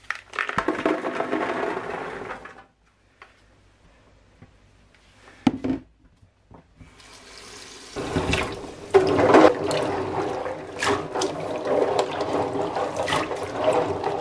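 Rose hips tipped from a plastic colander into a stainless steel sink, rattling for about two and a half seconds. A few seconds later the tap runs, filling the sink, and hands stir the hips around in the water.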